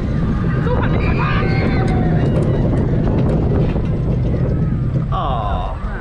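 Gerstlauer family coaster train running along its steel track, a loud steady rumble of wheels heard from on board, with a rider laughing early on. Near the end a brief higher-pitched whir, and the rumble drops as the train slows.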